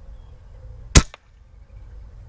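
A single shot from an Umarex Gauntlet .25 calibre PCP air rifle about a second in, a sharp crack followed a moment later by a fainter click.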